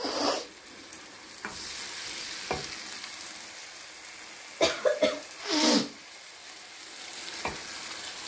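Thick tomato sauce sizzling steadily in a nonstick wok as a wooden spoon stirs it, with light knocks of the spoon on the pan and a few louder scrapes: one at the start and two close together in the middle.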